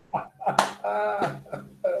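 Laughter heard over a video-call connection, in short choppy bursts with a drawn-out voiced note around the middle, and a sharp smack-like sound about half a second in.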